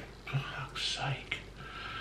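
A man muttering quietly under his breath, close to a whisper, in short broken fragments, with one faint click a little past halfway.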